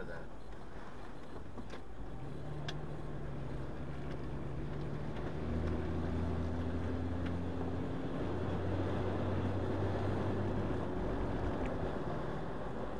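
Vehicle engine running with road noise while driving, heard from the moving vehicle. About five and a half seconds in the engine note gets louder and deeper, as under acceleration, and holds there.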